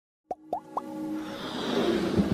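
Animated logo intro sting: three quick rising pops in the first second, then a swell of music that grows steadily louder.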